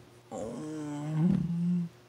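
A man's drawn-out vocal groan, held for about a second and a half, its pitch stepping up about halfway through before it stops.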